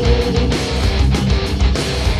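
Live hardcore punk band playing loud: distorted electric guitars strumming over bass and drums.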